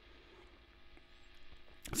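Quiet room tone with a faint steady electrical hum, with a voice starting near the end.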